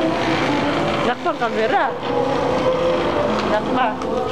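Steady background noise with held tones, and a young child's high voice sliding up and down in pitch without words, about a second in and again near the end.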